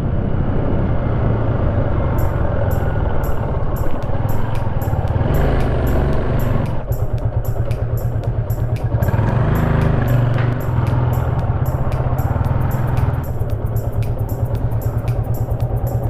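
Motorcycle engine running while riding, with road and wind rush. Background music with a steady beat comes in about two seconds in.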